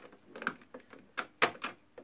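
A few sharp plastic clicks and knocks as a hand handles the handset of a black GPO 746 Mark I rotary telephone: one faint click about half a second in, then three quick ones in the second half.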